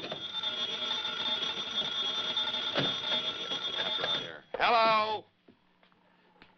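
Telephone bell ringing steadily, a continuous high rattling ring that stops about four seconds in. Shortly after comes a brief, loud, voice-like call that falls in pitch.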